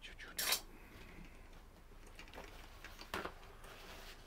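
A few brief clinks and knocks of painting tools: a sharp one about half a second in, fainter ones around two and a half seconds, and another sharp one just after three seconds.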